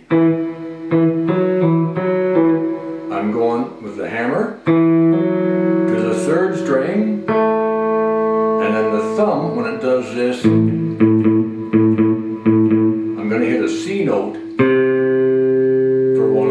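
Electric guitar, a Fender Stratocaster played fingerstyle with a thumb pick, working through a blues shuffle bass lick with hammer-ons: a run of plucked notes, some held and left ringing.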